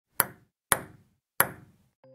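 Three sharp, crisp hits like table tennis ball strikes, the second half a second after the first and the third a little longer after that. Each fades out quickly.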